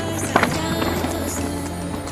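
Background music over a mountain bike riding down rough ground, with a short, loud clatter from the bike about half a second in.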